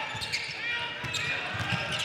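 A basketball dribbled on a hardwood gym floor, a few dull bounces under a steady murmur of crowd voices.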